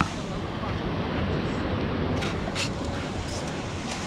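Steady beach surf with wind on the microphone, and a few short scrapes of a perforated metal sand scoop digging into sand about two to three and a half seconds in.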